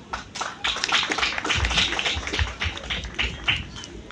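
Scattered audience applause: uneven hand claps, with single claps standing out from the crowd.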